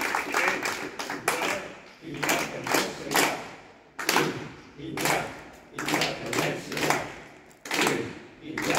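Small crowd applauding after an accordion piece, with voices among the clapping. About two seconds in, the clapping falls into a slower beat, about once a second.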